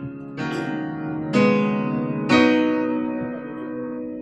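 Opening chords of a slow love song on keyboard with guitar: three chords struck about a second apart, each left to ring and fade.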